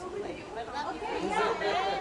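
Several people talking at once: overlapping casual chatter of a small group.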